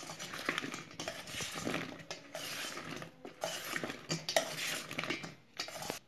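A metal spoon stirring and tossing fried potato pieces in a stainless steel bowl, scraping the bowl with frequent irregular clinks of spoon on steel.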